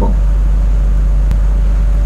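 A loud, steady low hum with a faint higher steady tone above it, and a single faint click a little past halfway.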